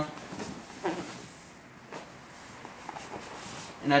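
Faint rustling and scuffing of a body and gi against padded wall mats as a person spins upside down, with a short falling vocal sound, a breath or grunt, a little under a second in.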